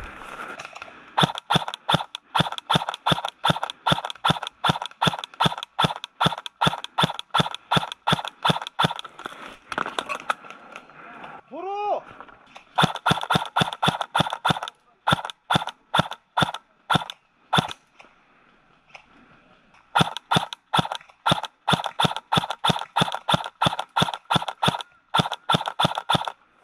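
DBOY KAC PDW airsoft electric gun firing single shots in quick, steady succession, about three a second. The shots come in two long strings, with a pause of about two seconds between them.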